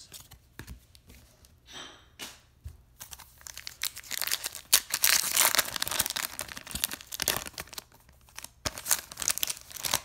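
A foil trading-card pack being torn open and its wrapper crinkled in the hands. A few soft rustles come first, then a dense crackling run from about three seconds in to past halfway, and a shorter one near the end.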